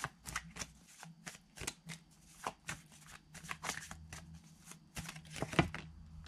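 Tarot cards being shuffled and handled by hand: a quick, irregular run of crisp card clicks and flicks, loudest a little past five seconds in.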